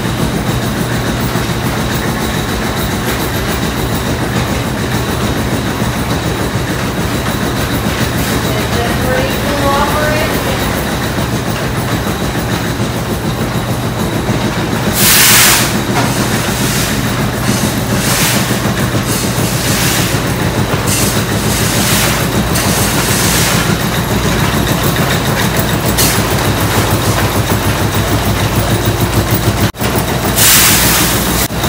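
Gristmill machinery running while grinding corn: a steady rumble with a fast, even clatter from the turning drive and millstone. A brief louder rush of noise comes about halfway through.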